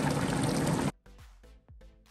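Thick curry bubbling in a wide pan on the stove, a steady hiss that cuts off suddenly about a second in. Soft background music follows.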